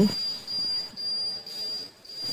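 A thin, steady high-pitched whine under faint, uneven rustling.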